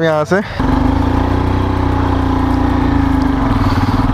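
Motorcycle engine pulling away from a stop: a steady drone whose pitch rises a little and then holds, with fast even firing pulses.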